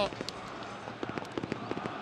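Fireworks crackling in a football stadium: many sharp pops in quick, irregular succession over the steady background noise of the stands.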